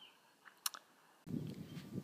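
Two short sharp clicks close to the microphone, followed about a second in by a faint steady background hiss.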